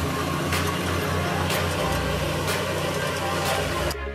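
New Holland TM150 tractor's six-cylinder diesel engine running steadily under load as it pulls a Lemken Korund cultivator through dry soil.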